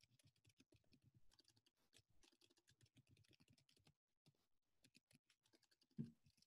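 Faint computer keyboard typing: a quick, irregular run of soft key clicks.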